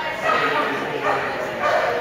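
A dog barking several times, with people talking.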